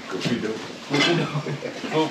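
Mostly indistinct talking by a man, with a few short knocks and rattles of junk being shifted in a small, cluttered room.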